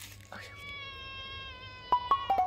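A cat meowing: one long, high call that falls gently in pitch.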